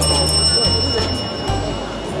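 A bright bell-like chime struck once at the start, ringing out for about a second and a half, over background music with a steady bass beat.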